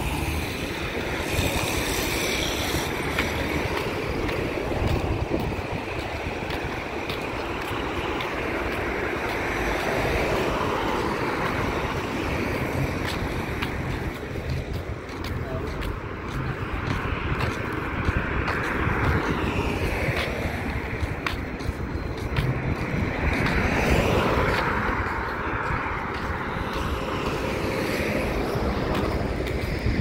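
Roadside traffic passing, with wind rumbling on the microphone and indistinct voices at times.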